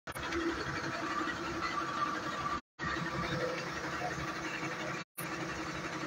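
Fire engine's diesel engine running steadily with a low hum, the sound cutting out briefly twice.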